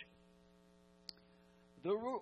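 Steady low electrical hum, made of several held tones, in a pause between spoken phrases, with one faint click about a second in. A man's voice comes back near the end.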